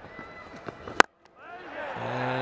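A single sharp crack of a cricket bat striking the ball, about a second in, over faint stadium background. The sound cuts out completely for a moment right after it.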